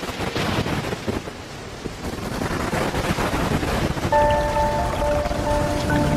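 Stormy sea sound effect: a dense rushing wash of water with a low rumble. About four seconds in, sustained music notes come in over it.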